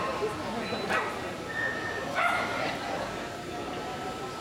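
A dog barking: two loud, sharp barks, about a second in and again just after two seconds, over a murmur of voices.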